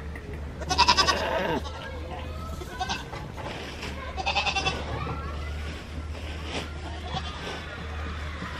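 Goats bleating: two loud, quavering bleats, one about a second in and another about four seconds in, with fainter bleats between.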